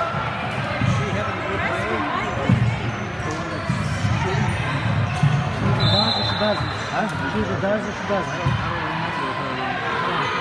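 Basketballs bouncing on a hardwood gym floor in an irregular patter, with people talking in the background.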